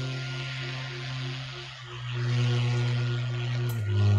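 Improvised saxophone and trumpet duet playing slow, long-held low notes. The pitch shifts about two seconds in and again near the end, with breathy hiss above the tones. A brief click comes just before the end.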